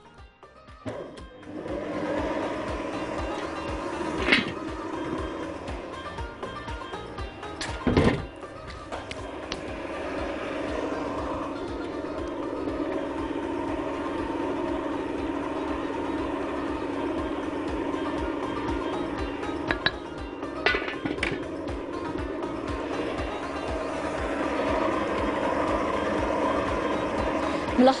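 Electric stand mixer running steadily as it beats hot choux paste, letting the steam out so the paste cools before the eggs go in; the motor sound grows slowly louder, with a couple of sharp knocks about four and eight seconds in.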